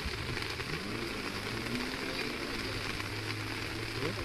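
Steady hiss of floodwater rushing and pouring through a breached bank, with a low steady hum underneath.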